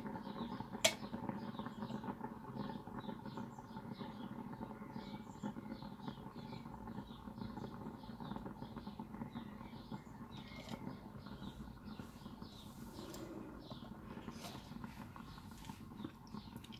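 Hand-spun lazy Susan turning with a vinyl record on it: a faint steady rumble with a run of light, irregular ticks, and one sharper click about a second in.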